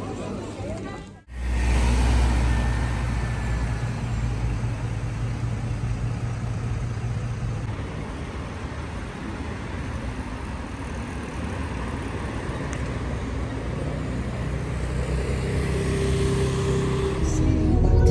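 City street ambience with road traffic: a steady rush of passing cars and general urban noise. It starts abruptly about a second in and rises a little near the end.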